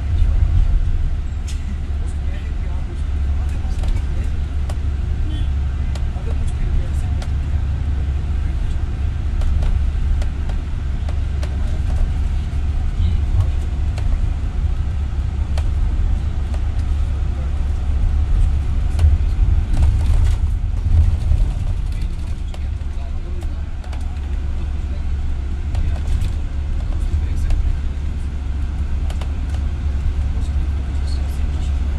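Steady deep rumble of a moving vehicle's engine and road noise while driving through city traffic, swelling slightly now and then.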